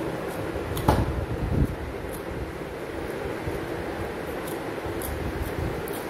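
A dog licking and lapping ice cream from a steel bowl, with faint short clicks throughout and two dull knocks about a second in, half a second apart. A steady fan-like hum runs underneath.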